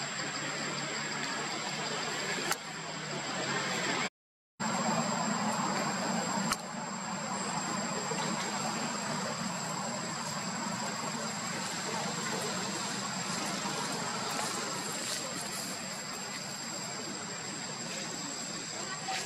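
Steady outdoor background noise with a thin, constant high-pitched whine over it. The sound cuts out completely for about half a second around four seconds in, and a low steady hum runs underneath after the gap.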